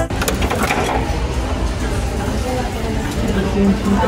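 Shop room noise with a dense, steady rustle of handling close to the microphone as plastic and melamine dishware is picked up, and faint background voices.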